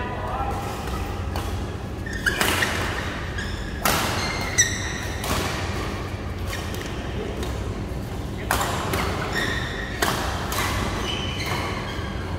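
Badminton rally in a large hall: irregular sharp smacks of racquets hitting the shuttlecock, with short high squeaks of court shoes on the floor and a steady low hum of the hall.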